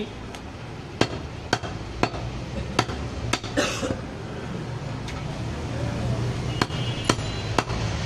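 A butcher's knife chopping goat meat on a wooden log chopping block: a series of sharp, irregular knocks, roughly one or two a second.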